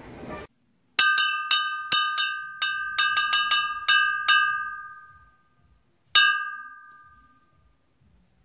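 A struck bell-like object dinging: about a dozen quick, unevenly spaced strikes of the same clear ringing tone, then a pause and one last ding that rings out.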